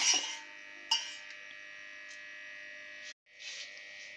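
A metal spoon stirring in a steel pot, with a single sharp clink about a second in. After that a quiet, steady electrical hum runs on, and the sound cuts out briefly just after three seconds.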